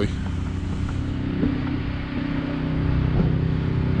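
A vehicle's engine running steadily while the vehicle moves along, getting a little louder in the second half.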